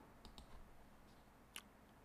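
Near silence with a few faint short clicks: three in quick succession soon after the start and one more a little past halfway.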